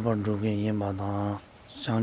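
A man's voice reciting in a level, chant-like monotone for about a second and a half, then a short pause before the voice starts again at the very end.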